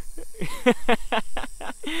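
A man laughing in a quick run of short bursts, over the defensive hiss of an agitated bull snake, which is plainest near the end.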